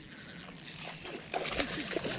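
Faint splashing and sloshing of water as a hooked largemouth bass thrashes at the edge of the bank, louder in the second half.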